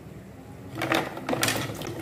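Cubes of clear jelly sliding off a plate and dropping into a pot of water: a quick run of knocks and clatters between about one and two seconds in.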